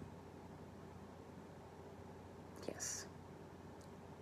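Quiet room tone with a steady electric fan running; about three seconds in, a short breath from the speaker, followed by a faint click.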